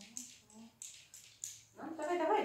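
A small terrier sniffing in short, quick puffs as it searches for a target odour. Near the end a louder voice begins.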